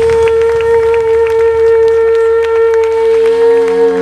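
Live blues band: one long high note held steady by a lead instrument over faint drum taps and a bass line that thins out, with lower notes joining near the end as the chord changes.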